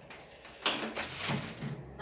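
A scraping, rustling noise lasting about a second, starting just over half a second in.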